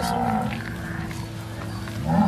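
Cattle mooing in a herd: one moo ends about half a second in, and a fainter, steady lowing holds after it.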